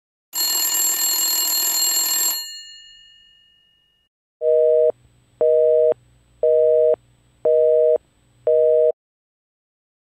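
A loud hissing burst with bright ringing tones that fades away over a couple of seconds, then five evenly spaced electronic beeps, about one a second, like a telephone line tone.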